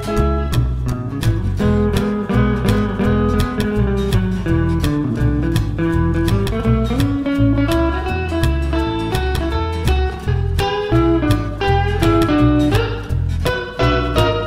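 Instrumental break of a rockabilly arrangement: an electric guitar plays melodic lead lines over a steady, driving beat of bass and drums.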